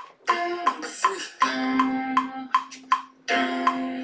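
Beatboxer's looped voice: a regular clicking beat about two or three times a second under hummed 'dun' notes, each held about a second, standing in for a piano part.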